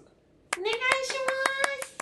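Clapping, sharp claps at about eight a second, starting about half a second in. A high voice holds one note over the claps, rising at first and then staying level.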